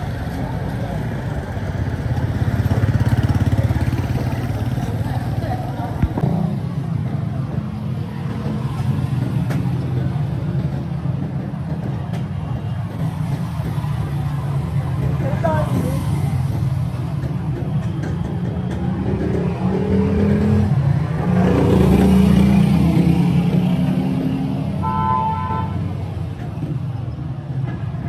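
Street traffic: motorcycle and auto-rickshaw engines passing close, swelling and fading, with a short horn beep near the end.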